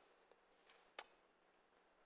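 Near silence: room tone, with one faint, sharp click about a second in.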